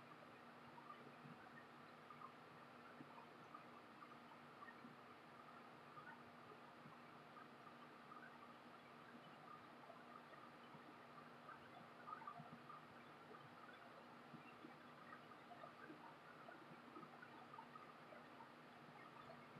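Near silence: the faint steady hum of a portable air conditioner running in the room, with a few faint soft ticks.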